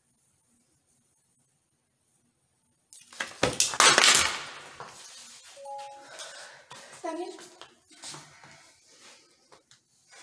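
An electric cattle prod fired against the neck: a sudden loud burst about three seconds in, lasting about a second and a half, with a knock as the camera is jolted. Short pained cries and gasps follow.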